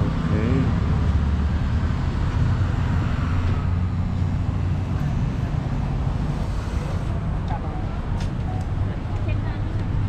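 Steady low hum of outdoor road traffic, with faint voices in the background.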